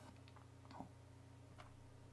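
Near silence: a low steady hum with a few faint, short clicks spread through it.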